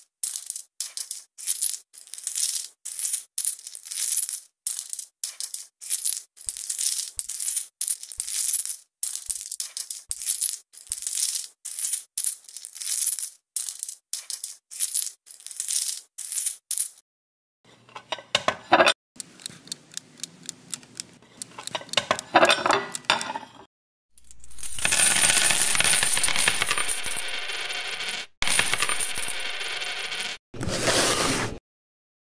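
Metal coins clinking against each other: a quick run of short, bright clicks, several a second, for about the first seventeen seconds. After a brief gap come denser, fuller rustling sounds, then a steady noise lasting about four seconds near the end.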